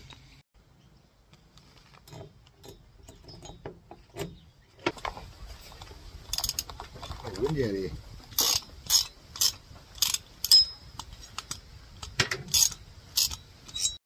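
Hand tightening of the cylinder bolts on a small two-stroke RC engine with a hex key, metal tool clicking. It is faint at first, then sharp clicks come about twice a second through the second half.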